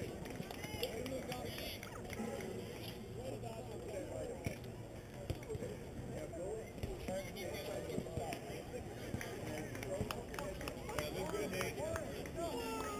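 Indistinct chatter of several voices talking at once at a distance, with a few short sharp knocks mixed in.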